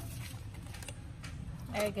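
Faint rustling and light taps of a white picture frame and its card mat being handled, over a low steady background hum; a woman starts speaking near the end.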